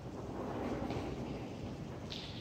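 Muffled rumble of background noise, swelling a little about half a second in and easing again before the end.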